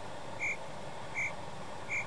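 Three short, high chirps evenly spaced about three-quarters of a second apart: a comic chirping sound effect that fills the pause after a punchline in place of laughter.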